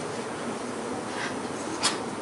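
Felt-tip marker writing on a whiteboard, with a short sharp squeak of the marker near the end, over a steady room hiss.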